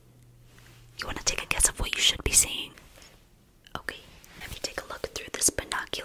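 Close-miked whispering with soft clicks, stopping for a moment about halfway through.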